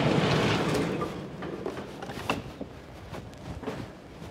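A door being opened, with a burst of rushing noise that fades within about a second, then footsteps and scattered light knocks as people walk through.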